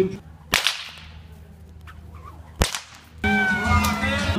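A whip cracked twice, two sharp single cracks about two seconds apart. Music starts near the end.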